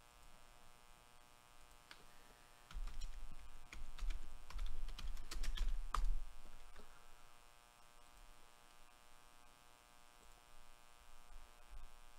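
Typing and clicking on a computer keyboard and mouse, the keystrokes bunched between about three and six seconds in, over a low steady electrical hum.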